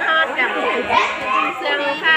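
Several children's voices chattering and calling out over one another while they play.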